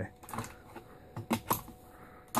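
A magazine being worked into a Tippmann M4 airsoft rifle's magazine well, giving a few sharp plastic-and-metal clicks and knocks, two close together about a second and a half in. The magazine catch is stiff, so the mag has to be pushed and wiggled to engage.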